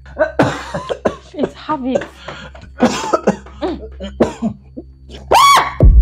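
A man coughing hard and repeatedly, with strained vocal sounds between the coughs, followed by a loud, rising vocal cry just before the end.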